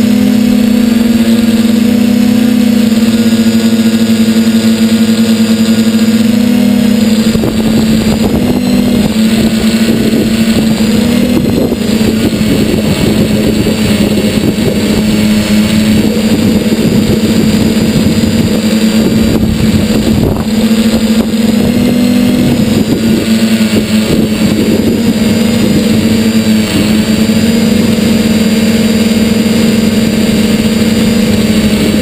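Steady motor tone of a small electric motor and propeller on the radio-controlled model aircraft carrying the camera, with wind buffeting the microphone from about seven seconds in.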